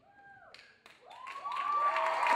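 Audience whoops and scattered claps after the lion dance drumming stops, swelling from about a second in into cheering and applause.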